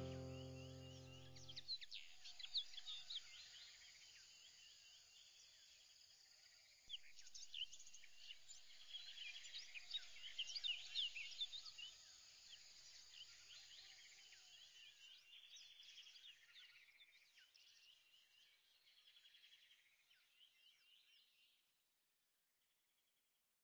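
A few closing music chords fade out in the first two seconds, then faint birds chirp and trill, many short high calls overlapping, dying away near the end.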